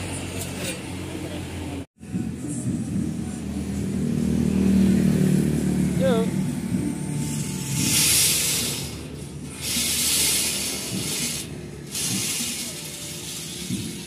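Electric circular saw on a homemade steel sliding rail run in three short bursts of about a second each in the second half. The bursts come after a stretch of low rumble.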